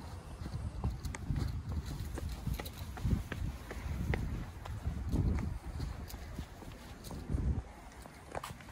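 Footsteps on a concrete walkway, soft low thumps about once a second, with scattered clicks and rustles from a handheld phone and a carried delivery bag.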